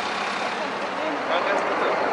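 Steady city street din: a mix of traffic noise and indistinct voices, with no single sound standing out.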